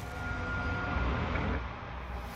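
Low, steady rumble of a cinematic logo-intro sound effect dying away, with a faint thin high tone for about the first second.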